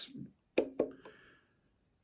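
Brief fragments of a man's voice, the end of a word and a short murmur, then quiet room tone.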